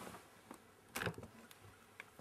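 Faint handling of a white plastic laptop as its lid is opened, with one short knock about a second in and a few light ticks.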